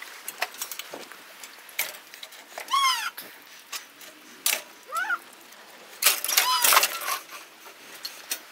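Clanking and rattling of a galvanised steel cattle crush as its side gate is worked open to let a calf out, with a few short, high-pitched squeals among the knocks. The loudest clatter comes about six seconds in.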